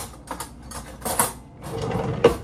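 Foil lid being peeled off a small plastic yogurt cup: a few short crinkling, crackling bursts, the loudest about a second in.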